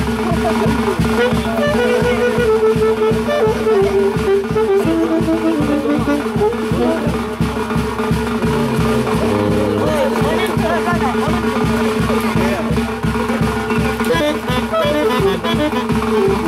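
Huaylas band playing live: a saxophone section carries a stepping melody over a steady bass-drum beat, with timbales and electric bass.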